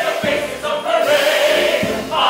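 A large musical-theatre ensemble singing in chorus over a live orchestra, holding a long note, heard from the audience of a live show.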